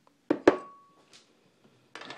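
A metal knife knocks twice against a ceramic bowl in quick succession. The second knock is the louder and leaves a brief clear ring from the bowl, followed by a few faint clicks.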